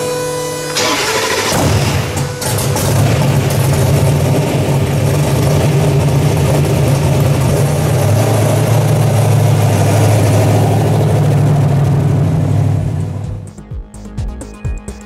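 Twin-turbo V8 of a Pontiac Firebird Trans Am on a chassis dyno, coming up loud about a second in and running at steady revs. It drops slightly lower about eight seconds in and fades out just before the end.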